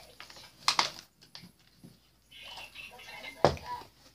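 Handling noise of plastic bottles and cups being picked up and knocked on a counter: light rustles with two sharper clicks, one about a second in and one near the end.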